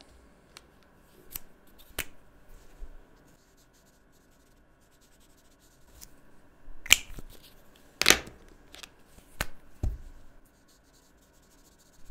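Faber-Castell felt-tip markers being handled over paper: a scattering of short, sharp plastic clicks and taps, the loudest two about seven and eight seconds in, with faint scratching of marker strokes between.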